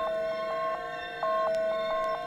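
Electronic synthesizer music: a two-note figure switching rapidly back and forth between a lower and a higher tone, about five changes a second, growing louder and softer in steps.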